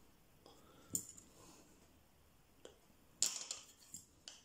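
A few faint, sharp clicks of small metal fly-tying tools being handled at the vise, with the loudest quick cluster of clicks near the end as curved scissors are picked up to trim a CDC wing.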